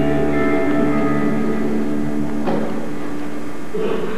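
Theatre pit orchestra holding sustained chords, with a single sharp struck accent about two and a half seconds in and a new held note near the end, over a steady low hum.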